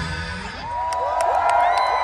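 The band's live music cuts off at the start, and about half a second in a large festival crowd breaks into cheering, yelling and whooping, with a few sharp claps.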